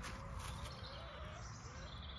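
Faint outdoor background with a low rumble, a couple of soft knocks in the first half second, and a faint wavering distant bird call.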